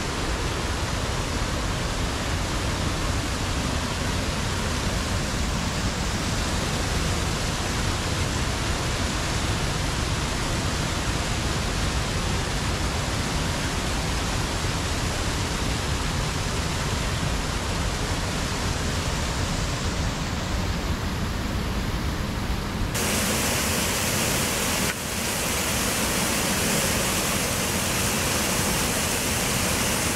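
Water pouring over the Sycamore Mills dam on Ridley Creek, running high after heavy rain: a loud, steady rush. About three quarters of the way through, the sound turns brighter and hissier, with a brief dip a couple of seconds later.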